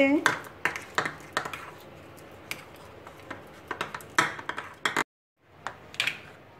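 Metal spoon clicking and scraping against a ceramic bowl as it mashes firm, fridge-cold butter, in irregular taps that come thicker about four seconds in. The sound cuts out completely for a moment just after five seconds.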